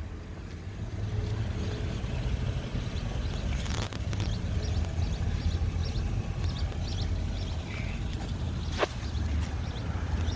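Steady low rumble of outdoor background noise, with scattered faint clicks and one sharper click a little before the end.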